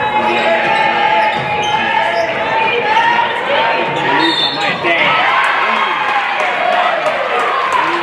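Basketball game in play in a gym: a ball dribbling on the hardwood court, with indistinct voices in the hall.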